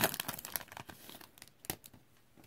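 Foil wrapper of a football-card hobby pack crinkling and tearing as it is pulled open by hand: a dense run of crackles that thins out, with one sharper crack near the end.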